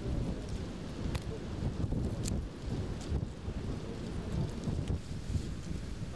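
Wind buffeting the microphone outdoors, a steady uneven low rumble, with a few faint clicks scattered through it. No gun blast is heard.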